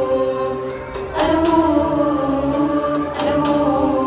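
Choral singing: a group of voices holding long notes, with new phrases entering about a second in and again near the end.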